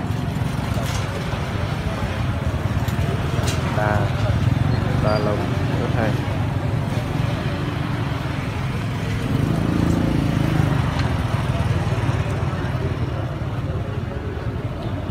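Busy open-air market ambience: a steady low rumble of traffic with snatches of people talking nearby. A motorbike engine rises and falls as it passes about ten seconds in.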